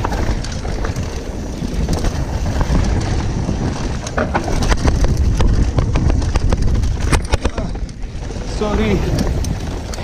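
Giant Reign 1 mountain bike descending a dirt trail at speed: wind buffets the microphone over the rumble of the tyres on loose dirt, with bursts of rattling clatter from the bike over rough ground about four seconds in and again around seven.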